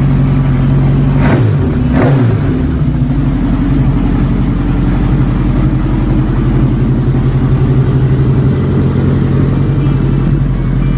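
A 1983 Honda CB1100F's inline-four engine running steadily, freshly dyno-tuned, with two quick throttle blips about one and two seconds in before it settles back to an even idle.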